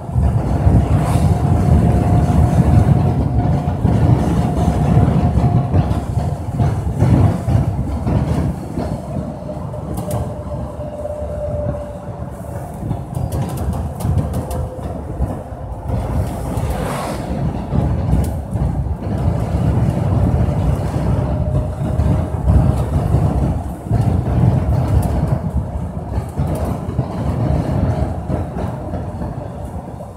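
Vehicle travelling along a road: a steady low rumble of engine and road noise, with a faint whine that sinks slowly in pitch.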